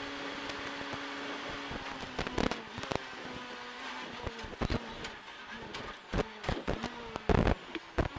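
Renault Clio R3 rally car's two-litre four-cylinder engine heard from inside the cabin at speed, holding a steady note at first. Sharp knocks and rattles run through the cabin, the loudest about seven seconds in.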